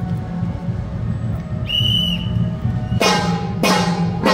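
Temple-procession percussion: a low drum beating steadily, a single whistle blast about halfway through, then hand cymbals clashing in a steady beat about every 0.6 s near the end, each clash ringing on.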